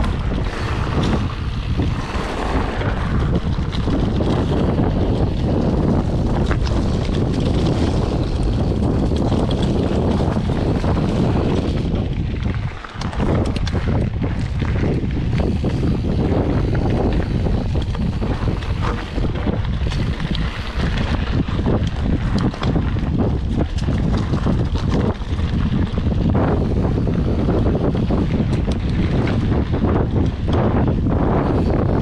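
Wind buffeting the microphone of an action camera on a mountain bike moving along a dirt trail, over the rumble of knobby tyres on dirt and short rattles and knocks from the bike over bumps. The noise dips briefly about halfway through.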